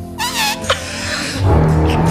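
A single high-pitched, cat-like vocal squeal that rises and falls, over background music with sustained tones. Near the end comes a louder, lower voice sound.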